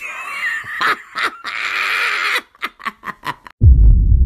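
A man's high-pitched, wheezing, screechy laugh that breaks into short separate bursts of laughter. A sudden loud low rumble cuts in near the end.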